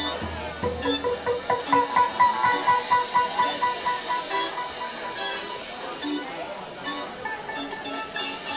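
Live band music in a bar: a single high note repeats quickly several times a second, loudest from about a second and a half in, then fades, over loose playing and voices.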